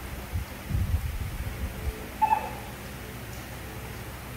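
A single short, high squeak from a baby macaque about two seconds in, after a few low bumps and handling noises.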